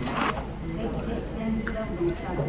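A quick slurp from a bowl of udon noodles and broth, lasting about a quarter of a second at the start, followed by a couple of light clicks.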